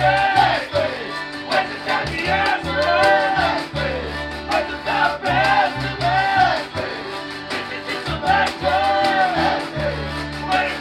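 Acoustic folk-punk band playing live: fiddle, accordion, washboard and upright bass under a man's loud sung vocal, with the washboard scraping out a steady rhythm.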